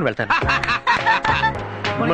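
A man snickering and chuckling over film background music, which comes in with steady held notes about half a second in.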